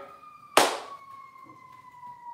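A distant siren wail, one tone slowly falling in pitch, with a single sharp clap about half a second in.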